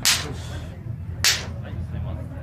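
Two sharp hand slaps about a second apart, palms meeting in high-fives, over a steady low hum.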